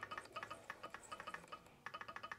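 Handmade brass straight Morse key being worked rapidly by hand, its beam and contacts making light, quick clicks, several a second, with a short break near the end.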